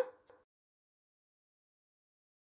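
Silence. A woman's voice trails off at the very start, and after that the track is blank, with no sizzle or pan sound.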